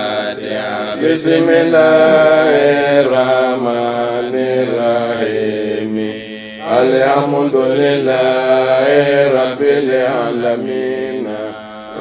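A man chanting an Arabic supplication in long, melismatic held notes that glide up and down, with a short pause for breath about six seconds in.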